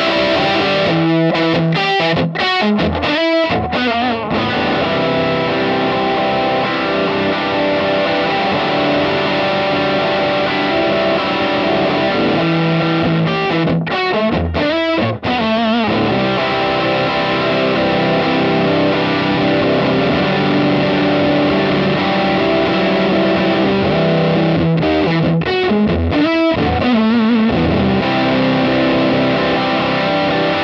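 Electric guitar played through a Mission Engineering Delta III Tri-Stage distortion pedal into a Kemper profiling amp with a Fender Deluxe profile: heavily distorted, sustained chords and riffs. Short breaks between phrases come a second or so in, around halfway, and again near the end.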